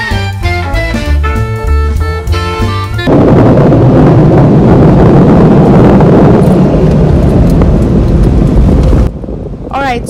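Jazz music for about three seconds, then a sudden cut to a loud, steady rush of air from an automatic car wash's dryer blowers, heard from inside the car, which stops abruptly about nine seconds in.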